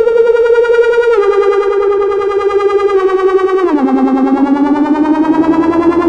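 ElectroComp EML 101 analog synthesizer sounding one sustained note that pulses quickly in loudness. It steps down in pitch about a second in, drops lower near the middle, then slowly rises again.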